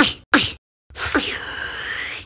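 Beatboxer's vocal percussion: two sharp snare-like hits in quick succession, then about a second in a long hissing mouth-made sweep that dips and rises in pitch.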